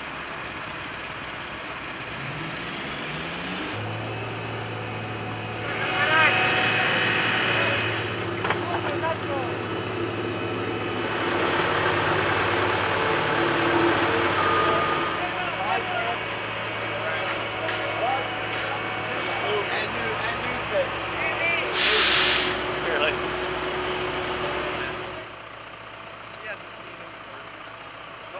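Diesel engines of asphalt paving machinery (paver, dump truck and roller) running steadily, their hum growing louder about four seconds in. Indistinct voices come and go over it, and a short loud hiss sounds about twenty seconds in.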